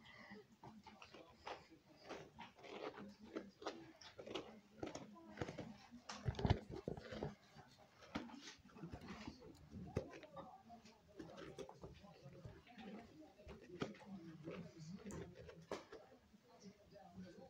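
Light knocks, taps and rustles from a hollowed-out pumpkin being turned over in the hands, with one louder thump about six and a half seconds in and faint, indistinct voice sounds underneath.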